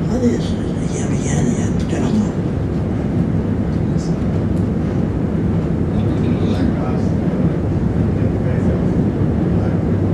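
A man speaking quietly into a microphone, not in English, over a steady low rumble of room noise.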